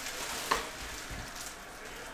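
Light crackly rustling as trading cards and foil pack wrappers are handled, with one sharp tick about half a second in.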